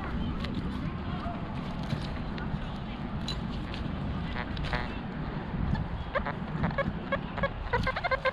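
XP Deus metal detector giving short, repeated pitched beeps from about six seconds in as the coil passes over buried metal. The beeps build into a strong, high target signal, a "scream". Before that there is only a low steady background noise.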